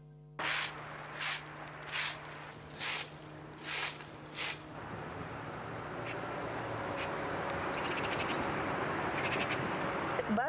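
A crow cawing six times, harsh calls coming under a second apart, followed by a steady outdoor noise that grows louder over the following seconds.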